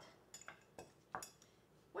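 Four faint clicks and clinks of kitchenware being handled on a countertop, the loudest a little after a second in.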